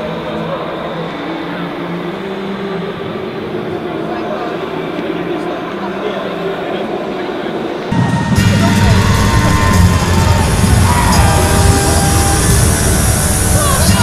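Busy event-hall ambience: a steady whooshing of ski erg machines under crowd murmur. About eight seconds in, a louder music track cuts in abruptly.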